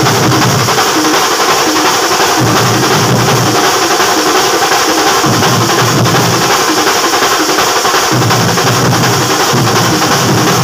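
A thambolam percussion troupe plays a loud, continuous rhythm on large stick-beaten drums and small snare drums. Deep drum strokes surge in and out every second or two over steady fast beating.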